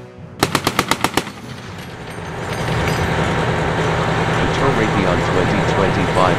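A short burst of machine-gun fire near the start: about eight rapid shots in under a second. A steady, loud rushing noise then builds and holds through the rest.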